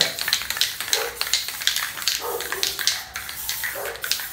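Aerosol spray paint cans being handled and shaken: a quick series of sharp metallic clicks from the mixing ball rattling inside the can.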